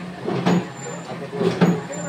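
Batasa (sugar-drop) making machine running: a steady motor hum with a sharp mechanical knock about once a second as its mechanism cycles.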